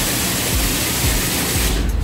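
High-pressure wash lance spraying water onto a motorcycle: a steady, loud hiss that cuts off near the end.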